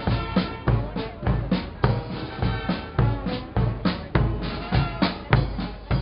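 Marching band playing as it passes: snare and bass drums keep a steady beat of about three strokes a second under trombones and other brass.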